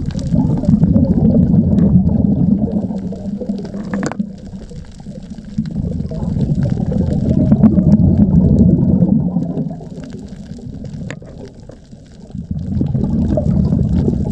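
Scuba diver's exhaled bubbles rushing and gurgling from the regulator underwater. They come in three long surges of a few seconds each, with quieter gaps between breaths.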